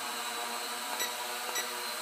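Small S160 quadcopter drone hovering, its propellers giving a steady buzzing whine.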